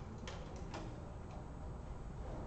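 A few light, irregular clicks, four within the first second and a half, over low steady room noise.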